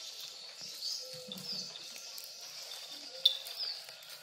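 Small birds chirping: repeated short, falling chirps over a quiet outdoor background, with one sharp click about three seconds in.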